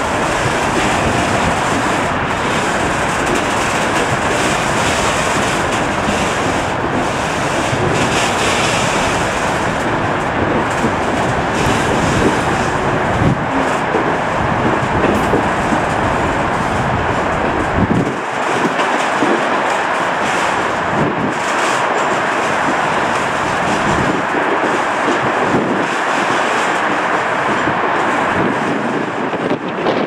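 A freight train's loaded open box wagons rolling steadily past, a continuous rail rumble with the wheels clicking over the rail joints at irregular intervals. The deep part of the rumble thins out a little past the halfway point.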